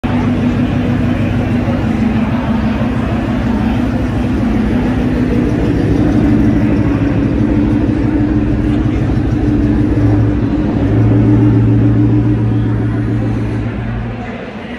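1971 Ford Bronco's engine idling steadily with a low, even note that grows louder about ten seconds in.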